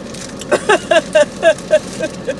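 High-pitched laughter: a run of about six quick, evenly spaced 'ha' pulses starting about half a second in. A car's low idle hums underneath.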